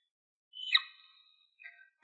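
A whiteboard marker squeaks once, briefly and high-pitched, as a number is written on the board. It is otherwise near silent, with a faint tick near the end.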